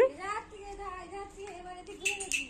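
A young child singing without words: a loud rising note at the start, then softer held notes.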